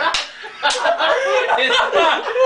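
Several men laughing heartily together, with a couple of sharp smacks in the first second.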